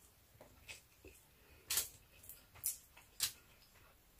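A person chewing a mouthful of braised pork belly and rice, heard as about half a dozen short, soft wet mouth clicks spread out over the few seconds.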